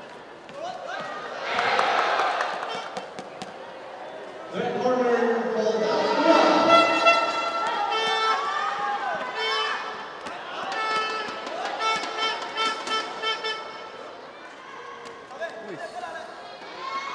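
Several voices shouting and calling over one another, in loud spells, with scattered sharp thuds of gloved punches and kicks landing in a wushu sanda bout.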